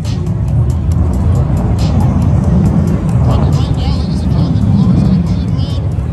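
Fighter jet flying a display pass, its engine noise a loud, deep rumble that swells in the middle, with crackling on top.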